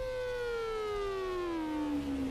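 A synthesized tone with several overtones gliding slowly and smoothly down in pitch, over a steady held note, in an electronic music backing.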